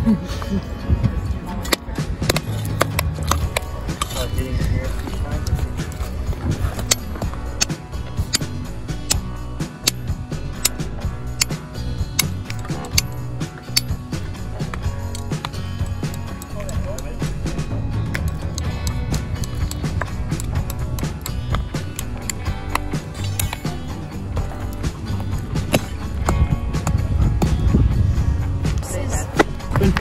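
Pickaxes and shovels digging into loose shale: a continual run of sharp clinks, knocks and scrapes of steel on broken rock. Background music plays underneath.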